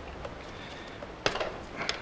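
Two short metallic clicks of a hand tool working on the engine's cylinder head, about a second apart, over a low steady hum.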